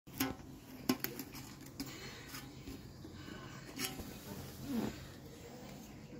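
Folded paper bills being pushed through the slot of a tin money bank, with a few sharp clicks and taps against the metal lid, loudest in the first second, and soft paper handling between them.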